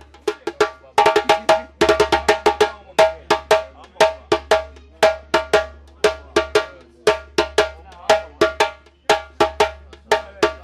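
Djembe played with bare hands, a repeating accompaniment rhythm of sharp slaps and ringing tones, the pattern recurring about once a second.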